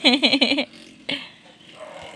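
A short, wavering vocal sound from a person in the first moment, then quiet room tone.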